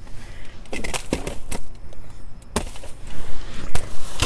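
Plastic trash bags and cardboard boxes rustling and knocking as they are shifted and poked with a grabber inside a dumpster: a string of irregular sharp knocks and crinkles.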